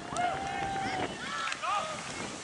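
Rugby players shouting during open play: several short calls and one held shout from about a quarter second to a second in, over wind on the microphone.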